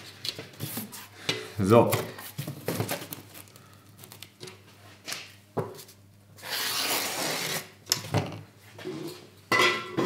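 Thin sheet-metal strip clinking and knocking against a steel welding table as it is handled. About six seconds in, a pen scratches a long line on cardboard along the strip, a scratchy rub lasting about a second and a half.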